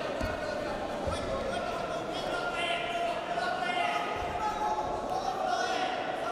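Dull thuds of wrestlers' bodies and feet hitting a foam wrestling mat, a few times, with voices calling out in a large reverberant hall.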